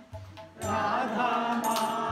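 Devotional chanting sung to music with a low beat underneath. It breaks off briefly at the start and comes back in about half a second in.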